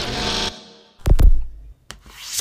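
Sound effects of an animated logo intro: a swish that fades over about half a second, then a sudden deep boom about a second in, and a short click near the end.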